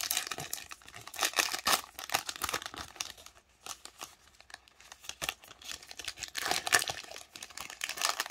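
Foil wrapper of a Panini Revolution basketball card pack crinkling as it is handled and opened, in two spells of crackling with a quieter gap in the middle.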